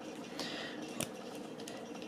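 Plastic action-figure beam-saber parts being handled: faint handling noise with one sharp plastic click about a second in.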